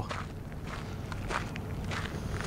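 Footsteps on dry sandy dirt, three or four steps at a walking pace, over a low steady rumble.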